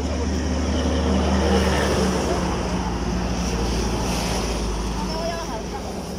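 A motor vehicle engine running with a steady low hum whose pitch shifts a little over two seconds in, under a rushing noise. Faint voices come in near the end.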